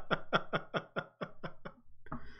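A man laughing hard: a fast, even run of short 'ha' pulses, about six a second, that dies away shortly before the end.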